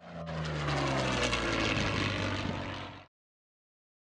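Propeller aircraft engine running with a steady low drone that falls slightly in pitch, as in a passing flight. It cuts off abruptly about three seconds in.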